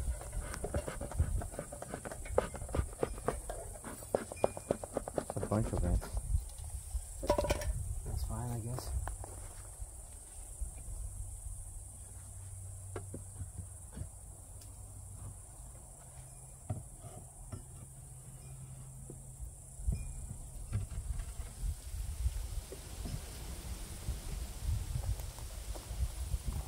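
Handling of a wooden Layens beehive: knocks and scrapes on the wooden top bars, busiest in the first several seconds and quieter later, over a steady high insect chirr.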